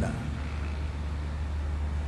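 A steady low hum with a faint even hiss, no speech; the room's background noise during a pause in the talk.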